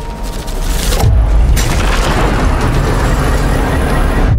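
Film-trailer sound effect of an earthquake: a deep boom about a second in, then a loud, dense rumble that cuts off suddenly at the end.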